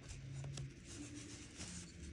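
Faint rubbing and rustling of fingers handling a large fossil megalodon tooth on a foam sheet.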